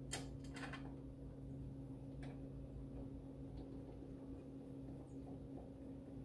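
Faint clicks and taps of a plastic retaining shield being fitted onto a CM-743U wire feeder's drive-roll assembly. The sharpest come in a cluster near the start, with another single click about two seconds in. A steady low hum runs underneath.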